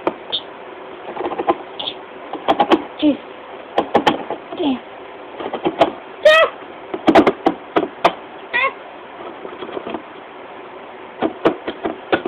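Hand-held crank can opener being worked around a steel food can: irregular metallic clicks and clacks as the wheel bites and turns, with short high squeaks every second or so.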